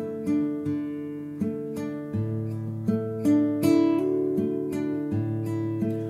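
Nylon-string classical guitar fingerpicked slowly, one note at a time, in a picking pattern on a D chord. Each note rings on, with deeper bass notes about two seconds in and again about five seconds in.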